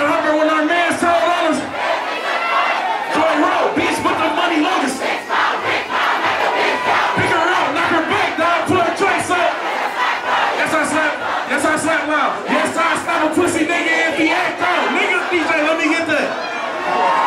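Large club crowd shouting together, loud and continuous, many voices overlapping.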